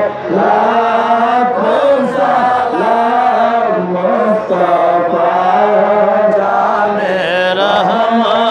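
A man chanting a devotional hymn in praise of the Prophet Muhammad into a microphone, heard through a public-address system. The line is melodic and held, with long sustained notes that bend in pitch.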